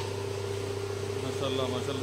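Electric hydraulic pump motor of a two-post car lift running with a steady hum.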